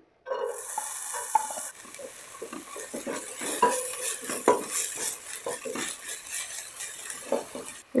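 Chopped red onion tipped into hot oil in a pot, sizzling strongly for the first second or so, then frying with a softer, steady sizzle. A wooden spatula stirs through it, knocking and scraping against the pot.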